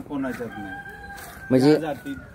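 A rooster crowing faintly, one drawn-out, steady call starting about half a second in and lasting about a second. A man's voice cuts in briefly at the start and, loudest, near the end.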